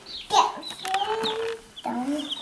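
Baby chicks peeping in short, high chirps, with a person's voice drawn out on one note for about a second in the middle.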